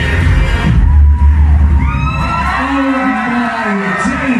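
Loud club dance music with a heavy bass beat. About two seconds in, the beat drops out and a long, drawn-out amplified voice over the club's sound system takes over.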